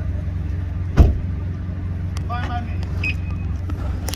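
Steady low mechanical hum, with one sharp, loud thump about a second in.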